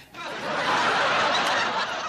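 Sitcom studio audience laughing, many voices blended into one wash of laughter. It swells up within the first half second and holds steady.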